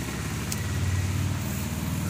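A steady low engine hum, like a motor idling, running evenly throughout.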